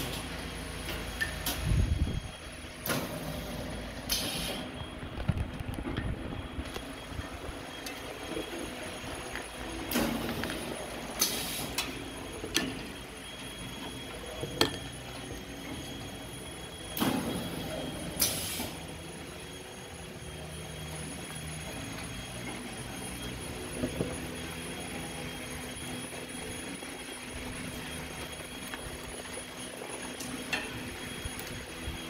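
An automatic honey filling and capping machine running with a steady mechanical hum. Short hisses like air being let out come several times, the loudest clustered at about 3–4, 11–12 and 17–18 seconds in.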